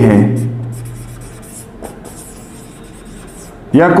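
Someone writing by hand in a few short, intermittent strokes.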